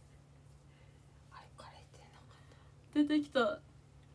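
A young woman speaking softly, half-whispered: a faint murmur about one and a half seconds in, then a short, louder phrase about three seconds in. A faint steady low hum lies underneath.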